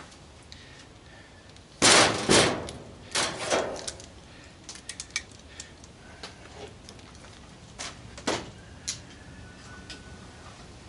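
Sharp metallic bangs and clatter of tools and parts being handled on a steel dryer cabinet: two loud bangs about two seconds in, another pair about a second later, then scattered lighter clicks and knocks.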